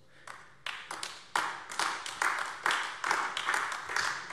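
Scattered applause from a small group: irregular hand claps that begin within the first second and keep going.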